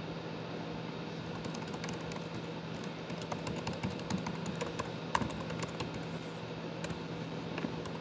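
Typing on a laptop keyboard: a run of quick, irregular keystrokes starting about a second and a half in, over a steady low hum.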